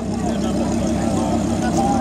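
Lamborghini Huracán Spyder's V10 engine running steadily at low revs as the car crawls past, with crowd chatter over it.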